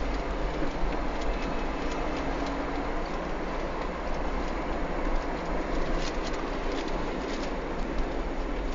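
Car on the move: a steady low rumble of road and engine noise, with a few light clicks or rattles about six to seven seconds in.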